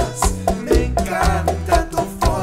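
Bachata music: guitar and bass over bongos and other percussion, in a steady quick beat.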